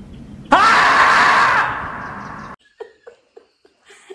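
The screaming-marmot meme sound: one long, loud 'aaah' scream that begins suddenly about half a second in, sweeping up in pitch at the start, holds for about a second, then fades and cuts off abruptly.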